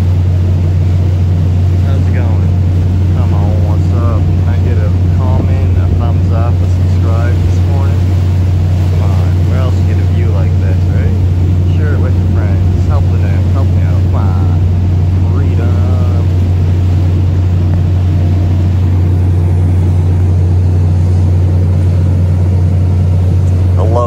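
Lobster boat's engine running steadily under way, a constant low drone, with the wash of water along the hull. Indistinct voices sound faintly over it for much of the time.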